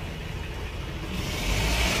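Low, steady vehicle rumble in the background. About halfway through, a louder hiss swells in over it.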